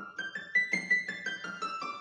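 Electronic keyboard on a piano sound playing a quick run of high-register notes, about six a second, climbing up and then coming back down: a demonstration of high-pitched sound.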